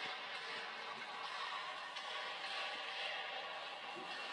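Steady rushing noise with no speech over it, from a television news broadcast.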